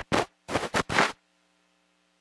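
Four short scratchy noises in quick succession, then a faint steady hum.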